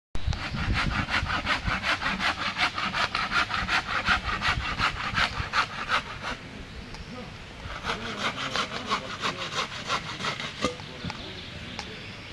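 Fast rhythmic scraping, about five or six strokes a second, like sawing or rasping. The strokes pause about six seconds in, then resume more faintly.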